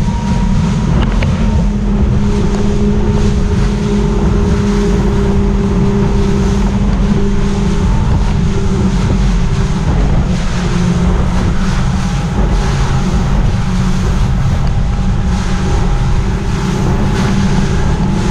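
Mercury Verado four-stroke outboard running steadily at cruising speed, an even drone under wind buffeting the microphone and the rush of the boat's wake.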